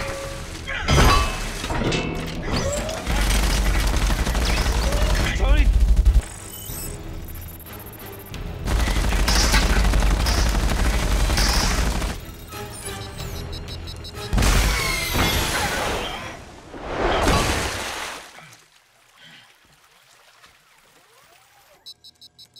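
Film battle soundtrack: rapid gunfire and explosions with deep booms over music, in loud surging stretches that die down about three-quarters of the way through to a much quieter level.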